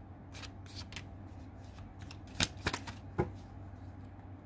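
Oracle cards being drawn from the deck and laid down on the spread: a few crisp card snaps and slaps, the loudest about two and a half seconds in.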